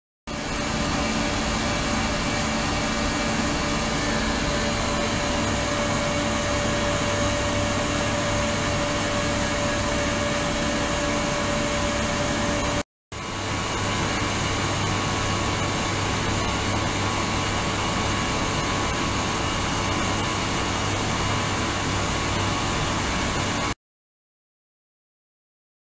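Ultrasonic tank with immersion transducers running: a steady hiss from the driven water with a low hum and a faint steady whine. It cuts off briefly about halfway through, then carries on the same.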